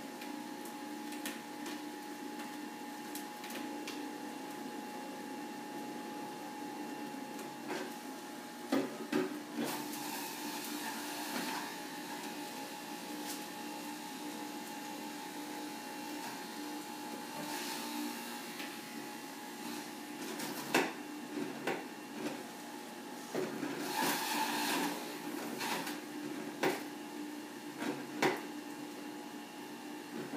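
Electric juicer's motor running with a steady hum while leafy greens are juiced, with scattered knocks and clatter as produce is fed and pushed down the chute, more of them in the second half.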